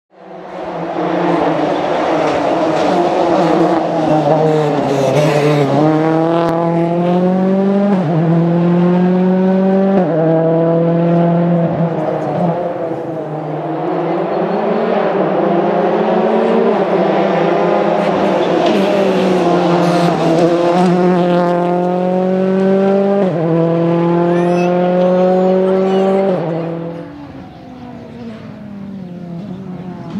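Ford Fiesta RRC rally car's turbocharged 1.6-litre four-cylinder engine accelerating hard, its pitch climbing and then dropping sharply at each of several quick upshifts. The sound dies away near the end.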